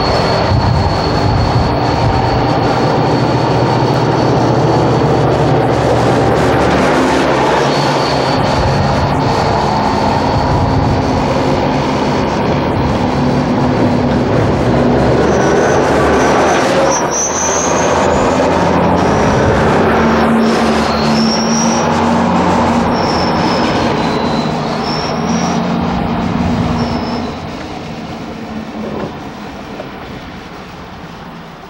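Armoured personnel carrier engine and running gear, heard loud and steady from close by as the vehicle moves, with a string of short high-pitched squeaks about halfway through. The noise fades near the end.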